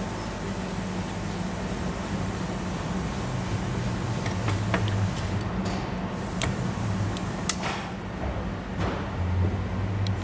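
Steady low machine hum, with a handful of light metallic clicks from about four seconds in as a steel circlip is worked by hand into its groove in the gearbox housing's seal bore.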